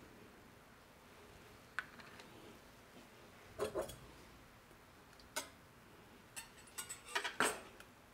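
Light clicks and knocks of kitchen handling: a metal whisk tapping in a saucepan and a plastic cream bottle being handled, with a quick run of clicks near the end.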